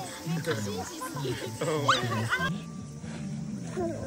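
Young children's voices with short high squeals over background music; the sound drops quieter after about two and a half seconds.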